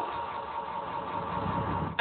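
Steady low rumble with background hiss, engine-like, rising slightly in the second half.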